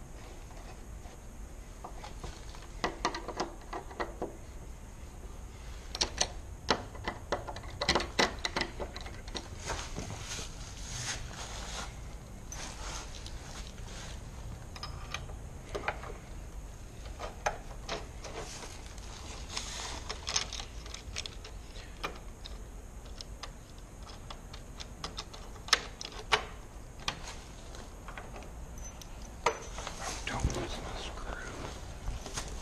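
Irregular small metallic clicks, taps and scrapes from a screwdriver working on a brass deadbolt and doorknob lock hardware, coming in clusters with short gaps between.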